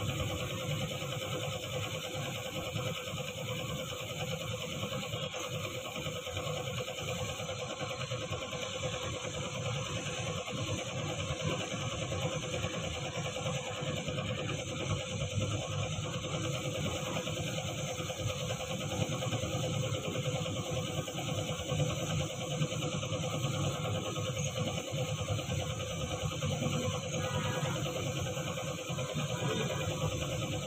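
Small air compressor running steadily with a hum, while a paint spray gun hisses.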